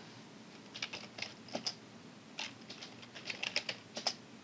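Faint computer keyboard typing: short clusters of keystrokes with pauses between them, as a command is typed in.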